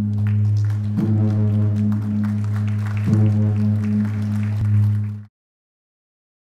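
A large bronze bossed gong, struck to mark an official opening, ringing with a deep, sustained hum. It is struck again about one second in and about three seconds in, and the sound cuts off suddenly a little after five seconds.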